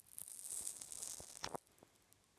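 Faint, high rustling hiss of a handheld camera being moved, with a light click about one and a half seconds in.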